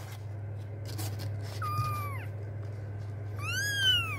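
Persian kittens mewing: two short high-pitched mews, the first falling in pitch about halfway through and the second rising then falling near the end, over a steady low hum.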